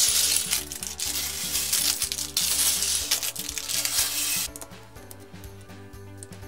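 Loose plastic LEGO bricks clattering on a wooden table as a pile is tipped out of its bag and spread by hand: a dense rattle of many small clicks that stops about four and a half seconds in. Background music plays throughout.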